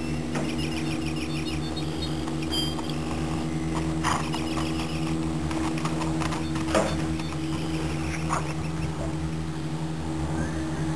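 A steady low hum with birds chirping in quick repeated high notes over the first few seconds, and a few sharp clicks, the loudest about seven seconds in.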